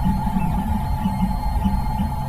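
A steady low hum with a thin, constant higher tone above it.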